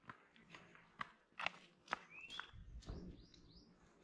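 Footsteps on a dirt forest path, about two steps a second, with short bird chirps about halfway through and a brief low rumble a little before three seconds in.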